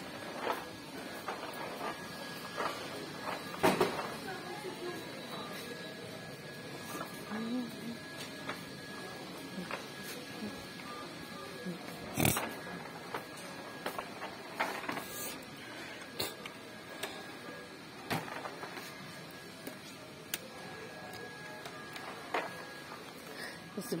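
Supermarket ambience: a steady hum with indistinct distant voices and faint background music, broken by scattered knocks and clicks, the loudest about four seconds in and again about twelve seconds in.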